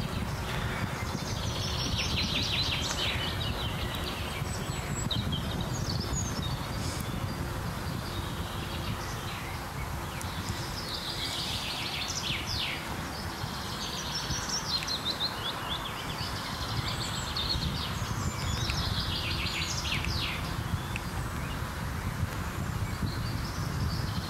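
Small songbirds singing, with repeated high trills and chirping phrases coming and going, over a steady low rumble of wind on the microphone.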